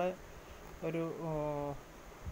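A woman speaking, with one drawn-out vowel held at a steady pitch near the middle.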